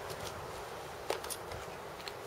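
Split firewood being handled on a log: faint clicks, then a single light wooden knock about a second in, over a quiet background.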